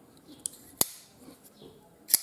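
Two short metallic clicks as a closed folding knife is handled in the hands: a faint one about half a second in and a sharper one just under a second in.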